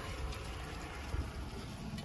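Wind rumbling and buffeting on the microphone on an exposed mountaintop: a steady, low rumble with no distinct impacts.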